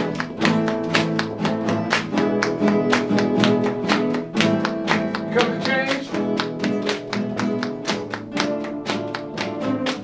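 A class of acoustic guitars playing a piece together in a steady rhythm, with rows playing separate bass, chord and drum parts and sharp percussive strokes about four a second.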